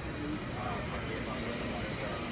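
Steady background noise of a busy exhibition hall, with indistinct voices talking in the distance.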